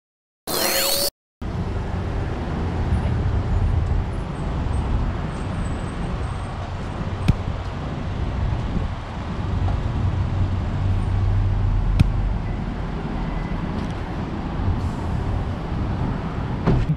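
A short sweeping electronic transition sound about half a second in, then the steady low rumble of a car engine idling, with traffic noise and two sharp clicks.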